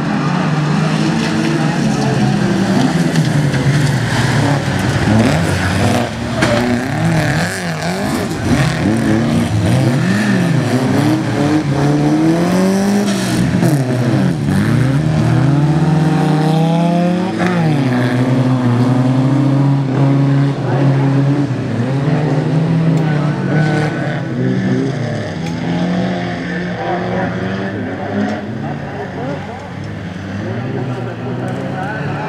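Several racing cars on a dirt track, their engines revving up and down as they accelerate and lift, with many engine notes overlapping. The engine noise eases off a little near the end.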